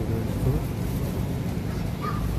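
Steady low rumble of outdoor street background noise, with faint voices nearby.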